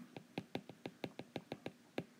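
A stylus tip tapping and clicking on a tablet's glass screen while handwriting: a quick, irregular run of about a dozen light clicks.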